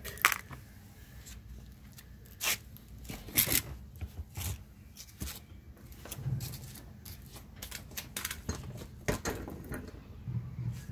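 Handling noise: a few scattered clicks and knocks with rustling in between, as a coiled lanyard with a metal fish grip and then a vacuum hose are handled.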